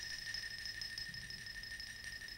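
A single high metallic note from the music score, struck just before and ringing on as one steady tone that slowly fades, the tail of a short run of mallet-struck, chime-like notes.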